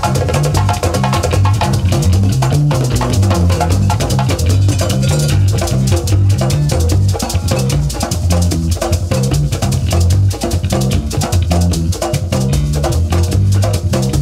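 Live band music: an electric bass playing a moving bass line under congas and other hand drums keeping a busy, steady rhythm.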